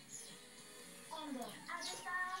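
Faint background voices with music.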